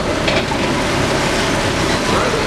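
Heavily loaded Mitsubishi Fuso truck crawling close by through deep mud ruts: its diesel engine working under load with a steady rumble, mixed with the noise of the laden body and tyres over the broken road.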